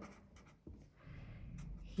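Felt-tip pen writing on paper: faint scratching strokes.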